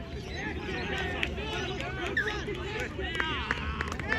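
Distant overlapping voices of players and spectators calling out across an open playing field during a touch-football game, with a few sharper shouts near the end.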